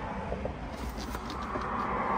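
Steady low rumble and hiss of a car cabin, with a few faint ticks and rustles as a hand moves over the center console.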